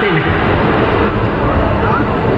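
A man's voice through a public-address loudspeaker system, blurred by a dense, steady crowd noise.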